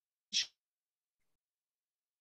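A single short breath noise from a man in a pause in his speech, about half a second in, followed by silence.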